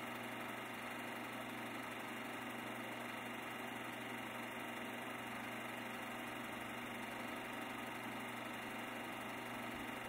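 A steady mechanical hum and whir that holds an even level throughout, with no change in pitch.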